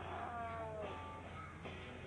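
Faint cartoon soundtrack played from a TV: a pitched, cat-like cry that slides down in pitch, followed by a couple of shorter held tones, over a steady low hum.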